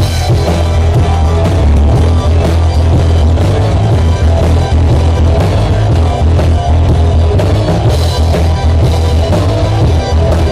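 Live rock band playing loud, with drum kit, electric guitar, bass guitar and keyboard together.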